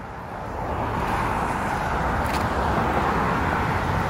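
Steady road traffic noise, a low rumble with a hiss, swelling over about the first second and then holding.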